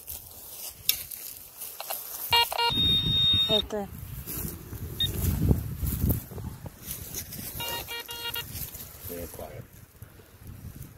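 Metal detector signalling a target: a quick run of beeps about two seconds in, running into a steady high tone for about a second, then another quick run of beeps near the end. Rough rumbling handling noise from the digging fills the middle.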